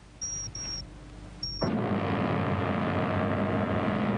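Three short, high-pitched electronic beeps, a sci-fi sound effect, then about one and a half seconds in a loud, steady, noisy rumble comes in and keeps going.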